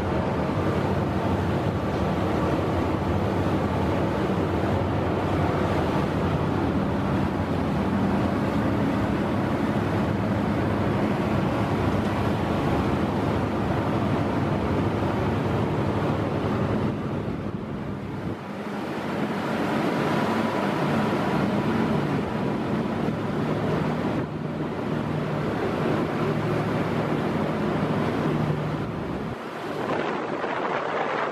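Jet-propelled whale-watch boat running at speed: a steady low engine hum under the rush of its churning wake, with wind on the microphone.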